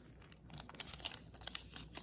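Foil Yu-Gi-Oh booster pack wrappers crinkling faintly as they are handled on the pile, a scattering of small crackles and ticks.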